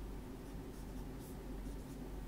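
Dry-erase marker writing on a whiteboard: a few short, faint scratchy strokes over a low steady hum.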